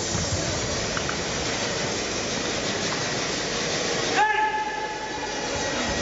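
Steady rushing noise of a crowded sports hall during a martial arts demonstration, with one loud, held shout a little past four seconds in.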